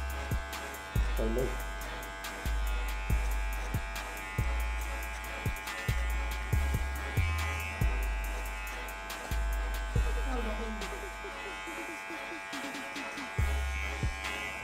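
A DINGLING cordless hair clipper running steadily with its motor hum, working without a guard to blend a skin fade at the nape. A low, pulsing music beat plays underneath.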